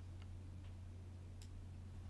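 A few faint, sparse computer mouse clicks over a steady low electrical hum.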